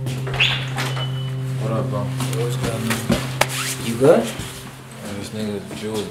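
A front door's latch clicks twice and the door is opened, over a low, steady music drone that fades out about four seconds in, with a few brief voice sounds.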